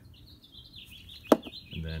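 A single sharp knock about a second in, as the steel crush sleeve is set down on the wooden workbench. A thin, wavering high chirping runs behind it.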